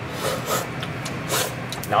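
A couple of short slurps as hot broth is sipped from a spoon to taste it, over a steady background hiss.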